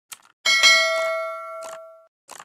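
Subscribe-button animation sound effects: a short mouse click, then a loud notification-bell ding about half a second in that rings on and fades over more than a second, with another click near the end.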